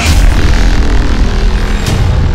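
Loud cinematic intro music: a heavy hit over a deep, sustained rumble, with a short sharp swish just before the end.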